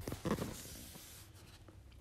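A brief soft rustle about a quarter-second in, then faint low room noise.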